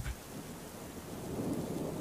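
Rain falling with a low rumble of thunder, the rumble swelling gradually toward the end.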